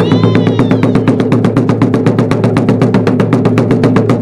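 Taiko drums struck with bachi sticks in a rapid, even run of strokes, about ten a second, over a steady low hum.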